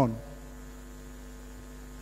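Steady low mains hum in the microphone and sound-system feed, with the end of a man's amplified word dying away in the first moment.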